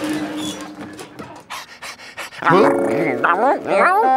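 A cartoon dog vocalizing: quieter at first, then from about halfway through a run of loud barking sounds that rise and fall in pitch.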